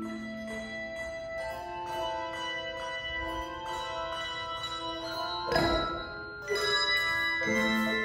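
Handbell choir playing: many bells struck in turn, their clear tones ringing on and overlapping. About five and a half seconds in comes a short burst of noise, and near the end the playing grows louder as lower bells come in.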